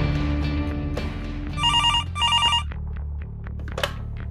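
Desk telephone ringing: two short trilling rings back to back, about a second and a half in, over background music that is fading out. Near the end there is a click as the handset is picked up.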